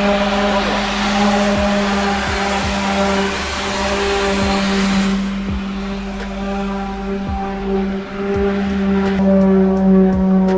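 Electric orbital sander running on the sheet-metal roof of a VW Beetle: a steady motor hum with the scratch of the sanding pad on paint and filler, which eases off about halfway through.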